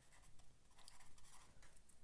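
A pen writing on paper: faint, irregular scratching strokes as a word is written out.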